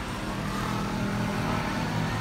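Steady mechanical hum of a running motor, with a faint high tone that drifts slightly downward.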